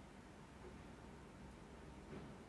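Near silence: faint room tone with a low steady hiss.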